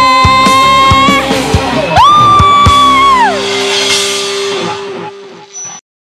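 Closing bars of a live dangdut band performance: two long held high notes, the second sliding down, then a low note fading out before the music cuts off suddenly near the end.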